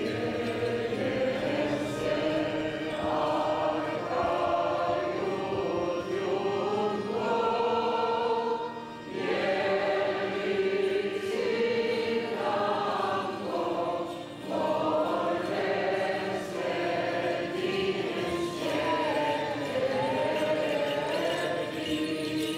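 Armenian church choir singing a liturgical hymn in long, sustained phrases, with brief breaks between phrases about nine and fourteen seconds in.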